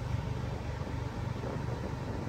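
Steady low mechanical hum of a stationary car heard inside its cabin, with no change through the two seconds.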